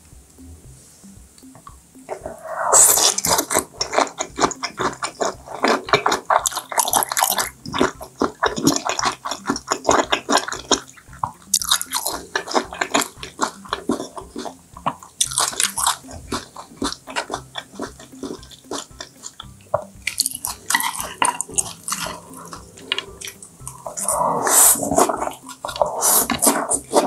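Close-miked wet chewing and mouth smacking of raw yellowtail sashimi. It starts about two seconds in and goes on as dense, rapid clicks in runs broken by short pauses.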